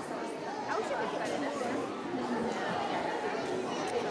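Many people chattering at once, overlapping voices with no single clear speaker.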